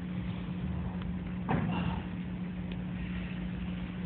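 Steady low hum and rumble of the hall's sound system and room, with a brief rustle about one and a half seconds in and a couple of faint clicks.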